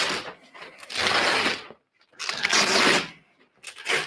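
Hook-and-loop (Velcro) fastening ripping apart as a fabric honeycomb grid is peeled off a Godox 30 x 120 strip box: a series of rips about a second apart, the last one short.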